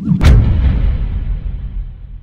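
Cinematic impact hit from a logo intro animation: a sharp crash about a quarter second in, then a deep boom that slowly fades away.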